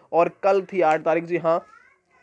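A man talking, his voice stopping about three-quarters of the way through.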